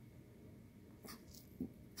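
Near silence: room tone, with a faint rustle about a second in and a short, faint low sound about a second and a half in.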